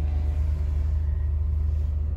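Steady low rumble heard inside the cabin of a parked 2019 Acura NSX, its twin-turbo V6 idling.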